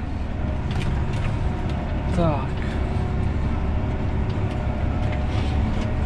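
John Deere 7R 290 tractor's diesel engine running steadily, heard from inside the cab: a low, even drone with a steady whine above it. A short vocal exclamation about two seconds in.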